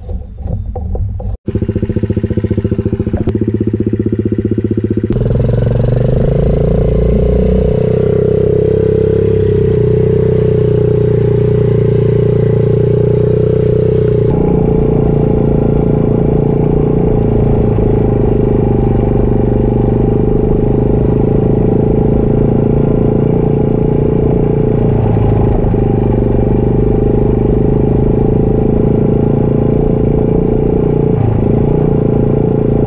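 Engine of the small vehicle carrying a homemade weed wiper, running steadily as it drives along a crop row. Its tone shifts abruptly twice, early and about halfway through.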